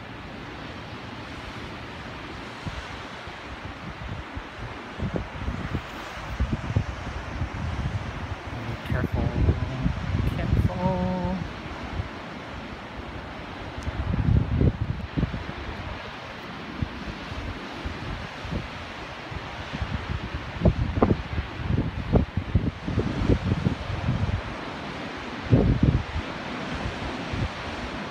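Wind buffeting the microphone in irregular gusts over a steady rush of ocean surf breaking below.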